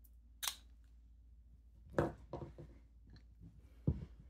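Desk handling sounds of a fountain pen and a paper card: a short scrape about half a second in, a click about two seconds in followed by a few light taps, and a knock near the end.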